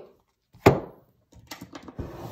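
A card deck knocked once against a wooden tabletop, sharp and loud, about two-thirds of a second in, followed by a few faint clicks of cards being handled.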